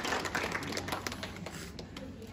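Scattered hand clapping from an audience, thinning out and dying away over the two seconds.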